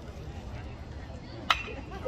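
A single sharp ping of a metal baseball bat striking the pitched ball, about a second and a half in, over a low stadium crowd murmur. The batter pops the ball up.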